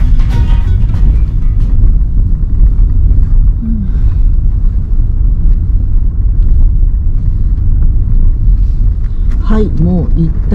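Steady low rumble of a car driving over an unpaved campground road, heard from inside the cabin. Background music fades out in the first couple of seconds, and a voice starts near the end.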